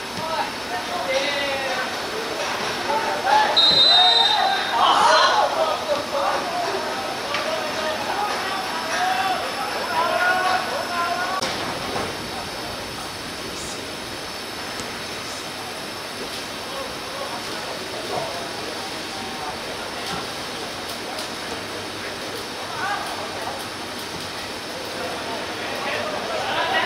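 Football players shouting and calling to each other across an outdoor pitch, loudest in the first dozen seconds, with a short high whistle blast about three and a half seconds in. After that the field goes quieter, leaving a steady outdoor background hiss with the odd distant call.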